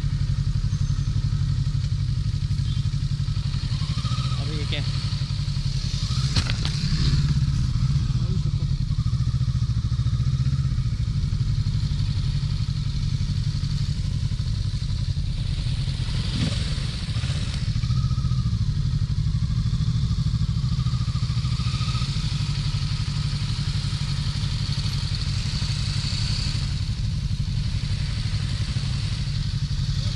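Motorcycle engine running steadily at low speed on a rough dirt track, heard from the rider's own bike along with wind noise. A few knocks and rattles come about six seconds in and again around sixteen seconds.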